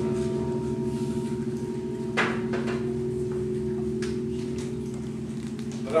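A final piano chord held on and slowly fading away, with a short knock about two seconds in.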